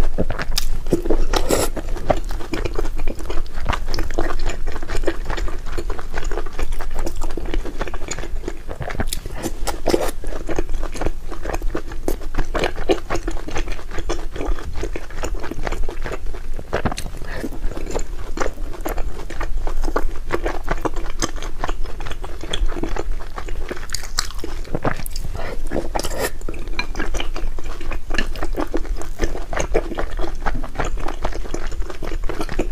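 Close-miked chewing and biting of glazed sweets in brown sugar syrup, with many short wet clicks and mouth smacks throughout.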